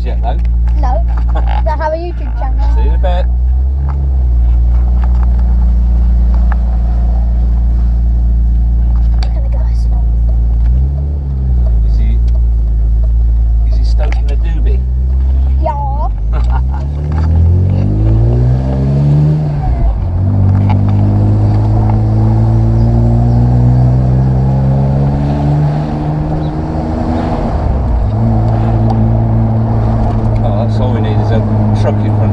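BMW M Roadster's straight-six engine driving and accelerating, heard from the open cabin with the roof down. The revs climb steadily, drop at a gear change about two-thirds of the way through, then hold at a higher steady note with another brief dip near the end.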